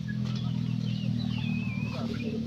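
A steady low engine hum runs throughout, with thin, high, wavering chirps over it and one longer chirping call in the second half.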